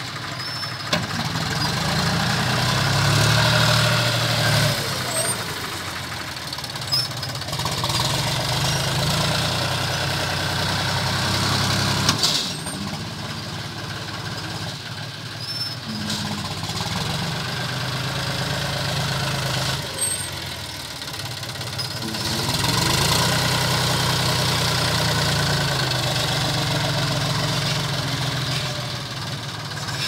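Diesel engine of a John Deere tractor with a Dabasiya front loader running and revving up in several long swells as the loader lifts and dumps soil, with a couple of short clunks between them.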